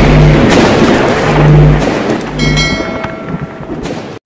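Intro-animation sound effects over music: a loud, noisy swell with short low tones pulsing every half second or so, then a bright ringing chime about two and a half seconds in, everything fading out toward the end.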